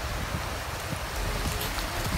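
Small waves washing in and out over a shelly shoreline: a steady rushing noise with a low rumble beneath it.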